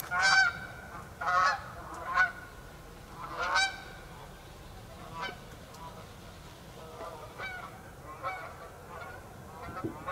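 A flock of geese honking as it flies overhead: several loud honks in the first four seconds, then fainter, scattered honks.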